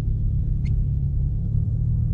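Ford Mustang's engine and drivetrain running with a steady low rumble, heard from inside the cabin, with one faint tick partway through.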